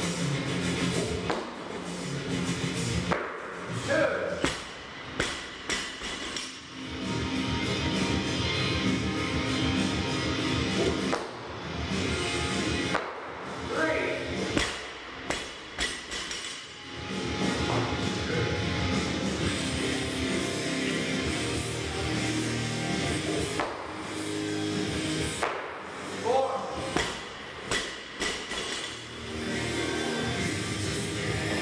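Background music playing throughout, with a few thuds scattered among it.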